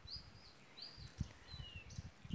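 Faint outdoor birdsong: short high chirps repeated about three times in two seconds, some rising and one falling. Low soft thumps run underneath, the loudest a little past the middle.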